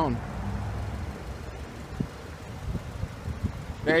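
Low, steady outdoor background rumble with a few faint ticks.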